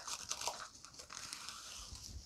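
Plastic cling wrap (Saran Wrap) being pulled off the roll in its box: faint crinkling and rustling with a few small ticks.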